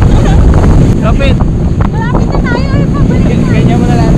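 Loud wind buffeting the microphone and water rushing past as a towed inflatable tube skims fast over the sea, with riders' high-pitched wavering voices calling out over the rush.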